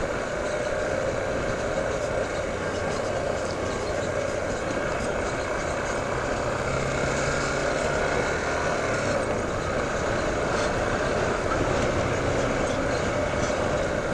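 Yamaha motorcycle running at low road speed, a steady mix of engine and wind noise with no sharp events.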